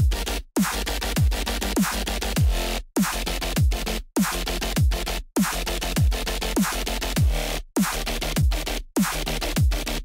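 Dubstep bass section playing back: heavy, dense synth bass with kicks that drop sharply in pitch, chopped by several abrupt short silences.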